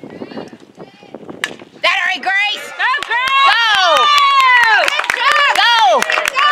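A softball bat strikes the ball once, about a second and a half in. Spectators then break into loud, overlapping yells and cheers with some clapping, cheering a base hit.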